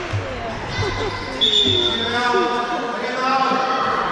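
Young players' voices calling out, echoing in a large sports hall, with a few dull thuds of the futsal ball on the court in the first couple of seconds.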